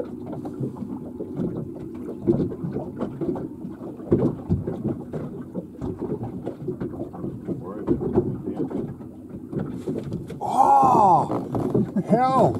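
A steady, muffled low rumble of a small boat at sea. About ten seconds in, a man lets out one loud drawn-out exclamation that rises and falls in pitch.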